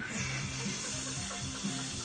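Water bubbling steadily in a bong as a hit is drawn through it, over background music.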